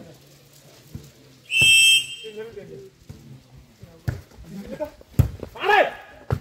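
A referee's whistle blown once, a short, steady high blast about one and a half seconds in, the loudest sound here. Players' and spectators' voices around it, and a sharp smack near the end as the volleyball is hit.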